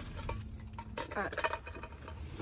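Light rustling of plastic wrap, with small metal clicks and scrapes, as a sealed metal collector's card tin is unwrapped and pried open.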